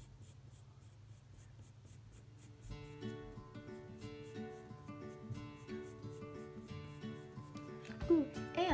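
HB graphite pencil scratching on paper in short repeated strokes, over soft background music that grows fuller about three seconds in.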